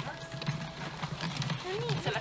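Rustling and crinkling of gift bags, wrapping and clothing as presents are unpacked, with voices in the background over a steady low hum.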